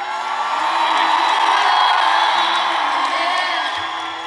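Large arena crowd cheering and screaming. The cheer swells to a peak about two seconds in, then fades.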